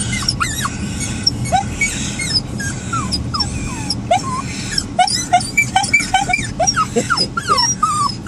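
Small white poodles whining and yipping in excitement: many short, high-pitched rising and falling cries, coming thicker in the second half.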